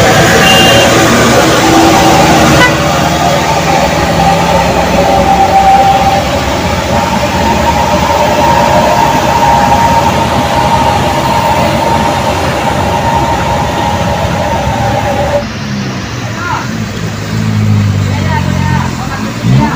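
Road traffic on a steep bend: heavy truck and car engines running, with held vehicle-horn tones. The sound changes abruptly about fifteen seconds in.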